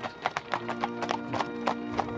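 Hooves of a pair of carriage horses clip-clopping on a paved road, a quick, uneven clatter of several hoof strikes a second. Background music with held chords plays underneath.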